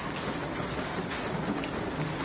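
Ping-pong-ball-sized hail coming down really hard, a loud, steady, dense clatter of countless hailstones striking, heard from inside a horse barn.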